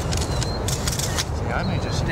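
A spade scooping and tossing soil, with scattered sharp scrapes and clicks over a steady low outdoor rumble. A few short, high bird chirps come through, and low voices of onlookers murmur in the second half.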